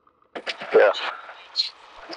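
Aircraft headset intercom: the line is silent, then a voice-activated microphone opens about a third of a second in with a sudden burst of cabin noise and a short spoken "yeah" over it.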